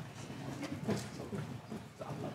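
Room bustle in a pause: faint murmuring voices with scattered knocks and clicks, the loudest about a second in.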